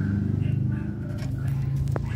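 Steady low hum of a desktop computer running, with a sharp click near the end.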